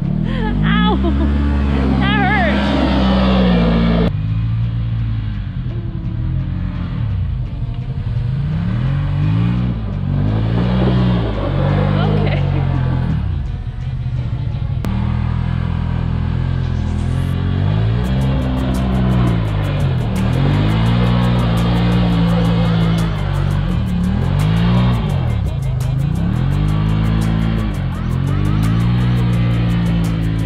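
Side-by-side UTV engines revving up and down over and over during snow donuts, the pitch rising and falling every second or two.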